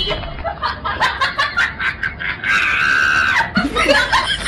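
Quick bursts of laughter, then a single long, high-pitched scream about two and a half seconds in, followed by more laughter.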